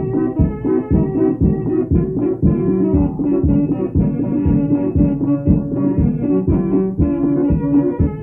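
Instrumental dance tune on accordion, organ and drum: held reedy accordion notes over a steady drumbeat of about two strokes a second.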